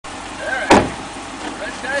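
A Chevrolet Corvette's driver door slams shut once, a sharp bang about three-quarters of a second in, over the car's V8 idling steadily.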